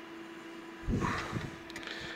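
A low, steady electrical hum, with a soft handling bump about a second in as a hand presses on the inverter's casing.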